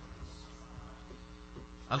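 Steady low electrical mains hum from the microphone and amplifier system during a gap in speech.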